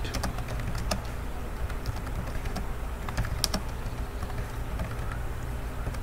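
Typing on a computer keyboard: irregular key clicks, a few sharper ones about three and a half seconds in, over a steady low hum.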